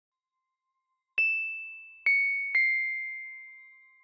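Three struck bell-like chime notes, about a second in and then two more in quick succession, each ringing on and fading slowly; the first is higher, the other two a little lower. A short musical chime sting over a production logo.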